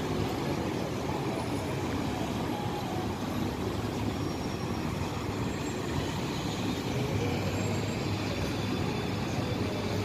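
Steady city street traffic noise: the low, even hum of cars and buses moving along the road, with no single vehicle standing out.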